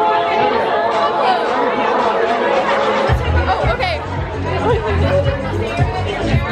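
Two women's voices chatting excitedly over background music. About halfway through, a heavy low rumble sets in.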